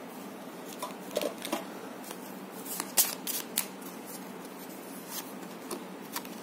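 Cards from a Lenormand deck being handled and drawn: a scatter of soft snaps and flicks, bunched together about three seconds in.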